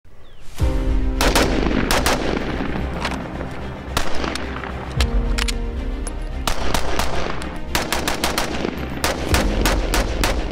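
Semi-automatic pistol fired in quick strings of shots, many in pairs and a fast run of several near the end, over background music with sustained tones.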